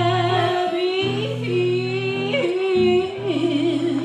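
Live blues band: a woman singing long, wavering, bending notes over electric guitar chords that stop and restart, with harmonica accompaniment.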